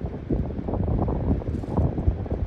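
Wind blowing across the microphone, an uneven low rumble.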